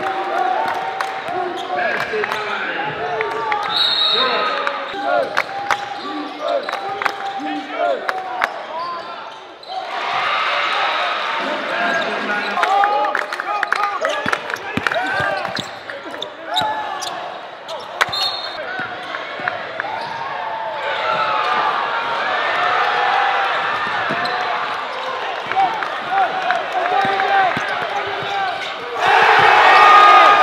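Live sound of a basketball game in a gym: a ball being dribbled, sneakers squeaking on the hardwood and spectators talking, in three edited stretches. Near the end the crowd noise jumps up suddenly as cheering starts.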